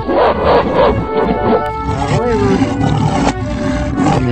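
A lion roar sound effect, loudest in about the first second, laid over upbeat children's background music with sliding tones.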